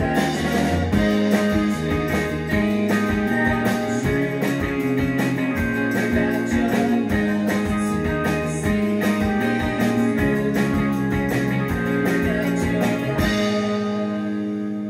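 Indie rock band playing live: jangling electric guitars, bass and drums. About a second before the end the drums stop and a held chord rings out.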